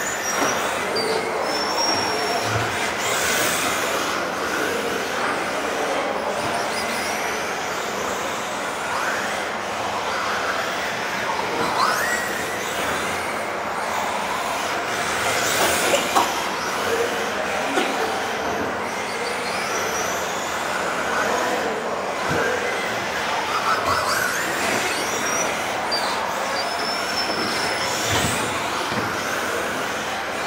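Several radio-controlled model cars driving laps in a large sports hall: a steady running sound with short, high motor whines rising and falling as the throttle changes, and a few brief knocks.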